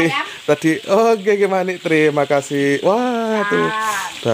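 A voice repeating a short word over and over in a sing-song way, with one long drawn-out syllable near the end.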